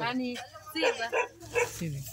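People talking in short, broken phrases, a woman's voice among others.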